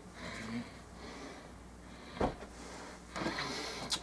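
Quiet handling noise with a single sharp knock about two seconds in, as the glass bottle is set down on the work table, and a fainter knock a second later.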